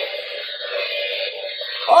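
A steady electric buzzing sound effect, a dense held tone that does not change, which stops abruptly near the end. It is the comic 'high voltage' jolt as the switch is thrown.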